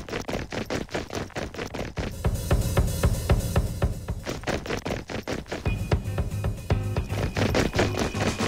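Fast, drum-driven music with quick snare and bass-drum strokes; about two seconds in, a fuller, heavier low end joins the beat.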